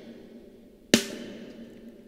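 A soloed snare drum track played back through a reverb: the tail of the previous hit dies away, then a single snare hit lands about a second in and rings out in a long, decaying reverb tail.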